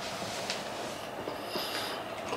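Quiet, mouth-closed chewing of a soft filled bread roll over a steady low background noise, with one faint click about half a second in.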